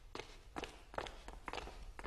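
Quiet footsteps of people walking across a hard floor, several steps a second.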